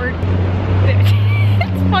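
City street traffic noise: a steady low rumble of passing vehicles that swells for a second or so in the middle, under a haze of street noise.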